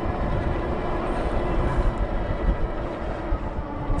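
Steady rumbling wind and road noise from a fat-tyre e-bike climbing a hill at about 12 mph: air rushing over the camera microphone and wide tyres rolling on asphalt.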